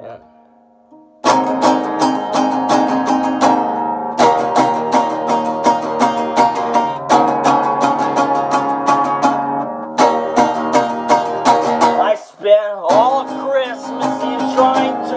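Acoustic guitar playing an instrumental passage. After about a second of near quiet, quick picked notes and chords start and run on steadily, with a brief break near the end.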